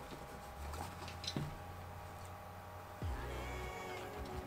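Quiet handling of a nylon backpack: a few light clicks as the zipper-pull stoppers are released, then a low rumble about three seconds in as the pack is turned around.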